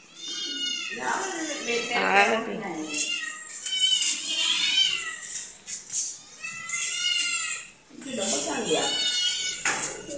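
A litter of kittens meowing over and over, many short high calls that rise and fall, as they beg for milk.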